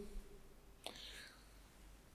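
Near silence, with a faint mouth click and a short, soft breath from a man about a second in.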